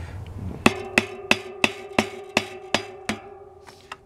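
A padded hatchet head tapping a new ISIS crank onto a unicycle's splined hub axle: eight sharp taps, about three a second, with a ringing tone that carries on after them. The taps seat the greased crank onto the axle.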